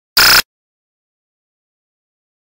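A single harsh burst of noise about a quarter second long, cutting in and out abruptly against dead silence: an audio playback glitch in the camera footage.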